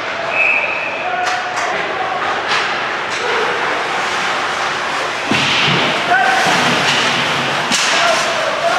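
Ice hockey game sounds in a rink: sharp clacks of sticks and puck and thuds against the boards over a steady arena hubbub, with brief shouts from players and spectators. A heavier thud comes about five seconds in.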